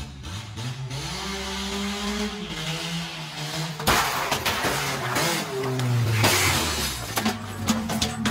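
Car engine revving hard, its pitch climbing and falling, with a sudden loud crash about four seconds in, more revving, and then breaking and clattering as the car smashes into something and its windscreen is knocked loose.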